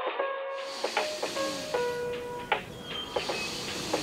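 Calm background music of long held notes. About half a second in, a steady hiss comes in under it, with a few light clicks.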